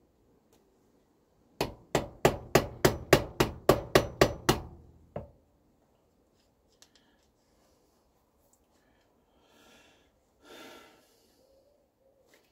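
A hammer tapping a steel roll pin through the hole in a magneto drive gear and shaft, used in place of a taper pin: about a dozen quick metal-on-metal blows at roughly three a second, then one last blow after a short pause.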